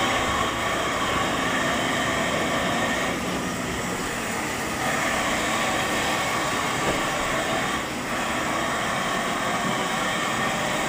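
A steady mechanical drone with a few faint high tones held in it, dipping slightly in level a few seconds in and again near the end.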